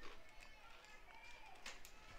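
Near silence: faint ambience with distant voices and a couple of faint clicks near the end.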